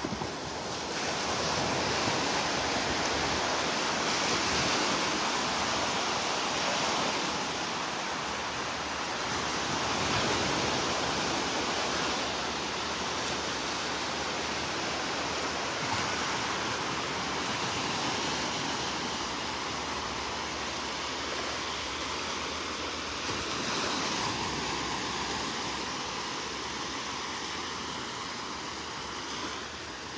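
Small waves breaking and washing over the sandy shallows: a steady rush of surf that swells and eases.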